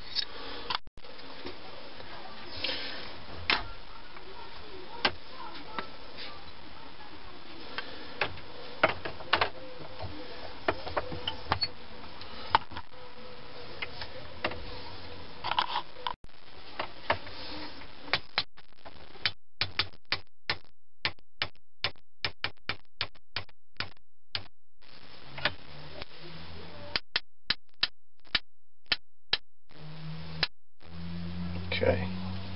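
Scattered wood-and-metal knocks as a katana blade's tang is fitted into its wooden handle, then through the second half a run of sharp light hammer taps, about two a second with short pauses, driving the blade and pin home in the handle.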